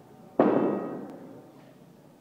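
A single loud bang about half a second in that rings briefly and fades away over about a second.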